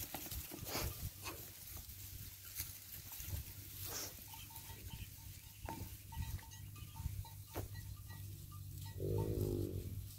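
Cattle in a herd: one short bawl near the end, over scattered light clicks and rustles and a low steady hum.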